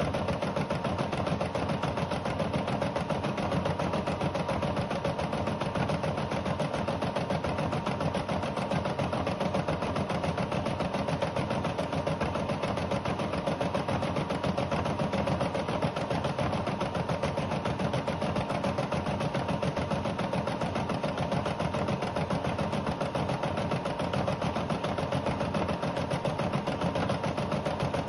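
Rosew ES5 embroidery machine stitching out a design: a steady, rapid run of needle strokes over the even hum of its motor.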